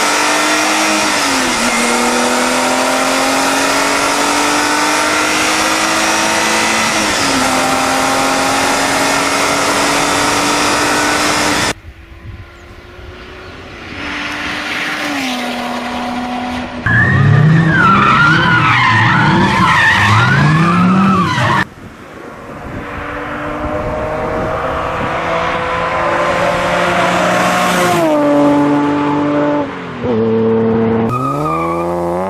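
Sports car engines at full throttle in a run of separate clips. First a car accelerates hard through the gears, its pitch rising and dropping at two upshifts, and cuts off suddenly near the middle. Then comes a few seconds of loud wavering tyre squeal, and toward the end another car's revs climb steadily as it accelerates.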